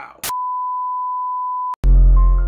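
A steady, high, pure electronic beep held for about a second and a half, with a click at each end. Near the end a trap beat with heavy bass starts.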